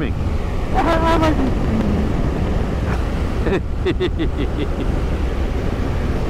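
Steady wind rush and road noise on a motorcycle at cruising speed over a coarse chip-seal surface, with the BMW R1200RS's boxer-twin engine running underneath as a low rumble. Short bursts of laughter come through about a second in and again near the end.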